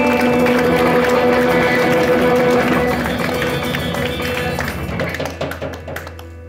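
Live hill country blues played on electric guitar and drum kit, with sustained guitar notes over busy drumming. The music thins and fades away over the last second or so as the tune ends.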